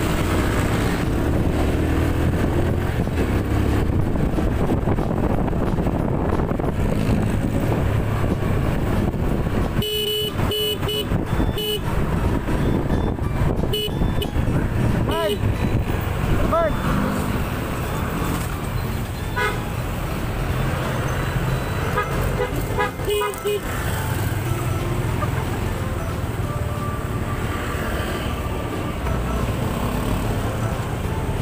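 Motor scooter riding in town traffic: steady engine and road-wind noise, with a vehicle horn giving several quick toots about ten seconds in and a couple more later on.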